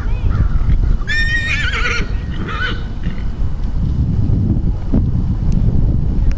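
A horse whinnying: a wavering, high call about a second long starting about a second in, followed by a shorter call.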